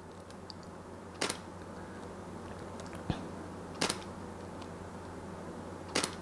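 Camera shutter clicking about four times at uneven intervals as frames of a manual focus stack are taken, over a faint steady low hum.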